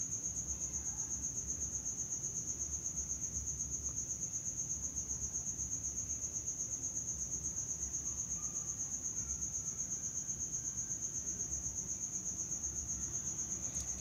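A cricket chirping in a rapid, even pulse on one high pitch, over a faint low hum.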